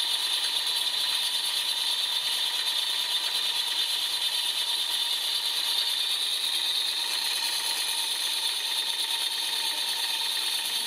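Live-steam garden-railway model locomotive, a Herrmann kit of the Rügen narrow-gauge engine 99 4633, running with its driving wheels turning: a steady fast hiss of steam and exhaust with a light mechanical rattle from the motion.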